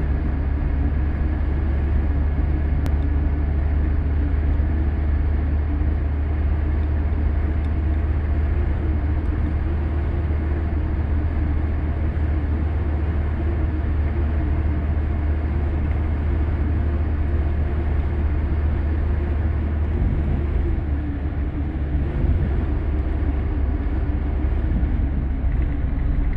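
Steady low rumble of moving trucks: engine drone and road noise, even throughout with a slight dip near the end.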